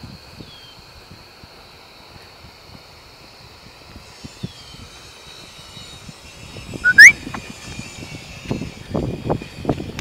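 A person whistles once to call a dog: a short, sharp whistle rising in pitch about seven seconds in, the loudest sound here. Before it there is a quiet open-air background with a faint steady high hum. After it come irregular low knocks of footsteps and phone handling.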